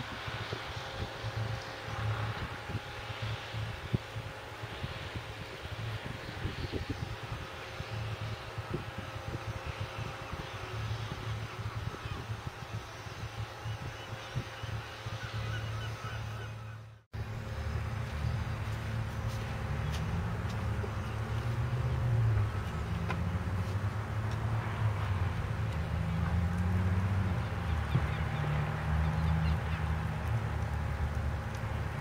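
Construction machinery running across the river: a steady low rumble with a faint whine, and in the second half an engine revving up and down. The sound drops out abruptly for a moment a little past halfway.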